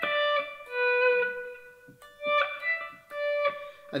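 Clean electric guitar playing about four single sustained notes of a solo line high on the neck, around the 10th and 12th frets of the E and B strings. Each note is swelled in with a volume pedal, so it fades up rather than starting with a sharp pick attack.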